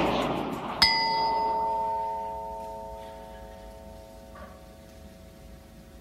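A small hanging bell struck once with a striker, ringing in several clear tones that die away over about three seconds. A faint second knock follows about three and a half seconds later.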